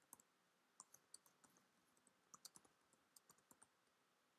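Faint computer keyboard keystrokes: a person typing a line of text, the clicks coming irregularly in short runs.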